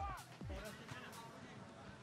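A lull in Spanish-language football TV commentary: the commentator's voice trails off at the start, then only faint background sound.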